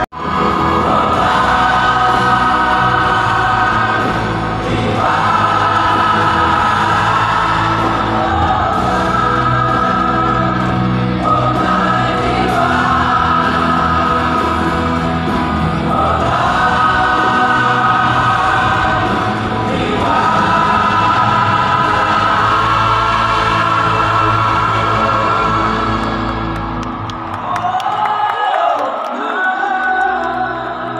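Choir singing over amplified musical accompaniment, in long held phrases a few seconds each with short breaks between them. Near the end the accompaniment drops back and a single voice sings on.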